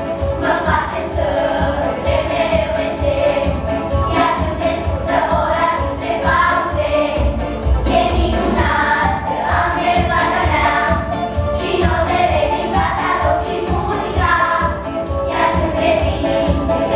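A group of young girls singing together over accompanying music with a steady beat.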